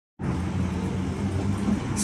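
Steady city traffic rumble with a low hum, cutting in abruptly a moment after the start.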